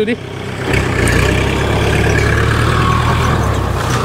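Kubota L5018 tractor's diesel engine running steadily as the tractor pulls a disc plow across the field.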